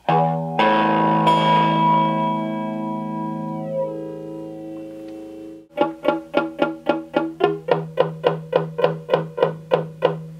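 Electric guitar through a Strich Twister analog flanger pedal and a small practice amp, the flanger on freeze so its sweep holds in one position: a strummed chord rings and slowly decays for about five seconds. Then the chord is picked rapidly, about five times a second.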